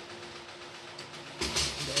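A metal spoon scraping and clattering against a metal pot while stirring thick mung bean porridge, starting about one and a half seconds in, after a quiet stretch with a faint steady hum.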